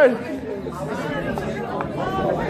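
Speech only: indistinct chatter of several people talking in a large hall.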